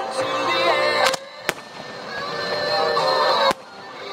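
A song with singing plays over aerial firework shells bursting, with sharp bangs about a second and a half in and again near the end, where the sound drops off suddenly.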